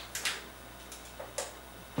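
A plastic snack bag being handled and pulled open: a few faint crinkles and clicks spread over about a second and a half.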